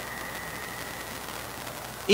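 Room tone: a steady low hiss with a faint low hum and a faint, thin high tone that fades out near the end.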